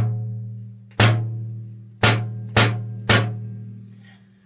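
Junk-kit bass drum made from a paint tin, struck five times: each hit is an earthy thud with a low metallic hum that dies away slowly. The first hits come about a second apart, the last three quicker, about half a second apart.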